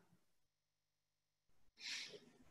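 Near silence, then a short breathy sound near the end: a person sighing or breathing out.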